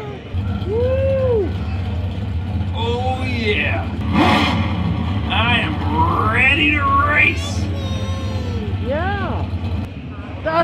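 Steady low engine rumble played from the Lightning McQueen car figure's sound system, with a toddler's short, high-pitched, rising-and-falling calls over it.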